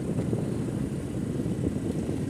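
A vehicle on the move, giving a steady low rumble of engine and road noise.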